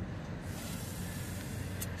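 Breath blown hard through a plastic Starbucks drinking straw: a steady hiss of air that starts about half a second in.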